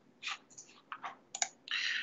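Irregular, faint clicks and taps of a computer keyboard and mouse picked up by a desk microphone, followed by a short rush of hiss near the end.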